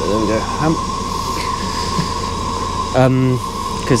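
Steady mechanical hum and hiss inside a parked Irizar i6 coach, with a constant high-pitched whine running through it.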